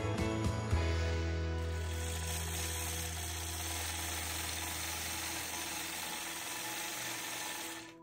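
Longarm quilting machine stitching along a ruler: a steady motor hum with a dense, fast stitching noise. It starts about a second in and cuts off suddenly at the end, over background music.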